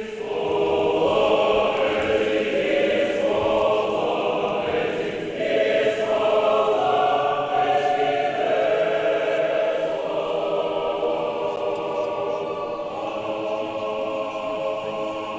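Orthodox church choir singing unaccompanied in long held chords, with a new, louder phrase starting about five and a half seconds in.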